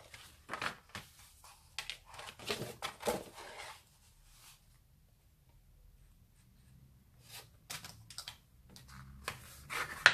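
A sheet of brown card being folded and pressed flat by hand: short, faint paper rustles and creasing sounds, with a quiet stretch in the middle.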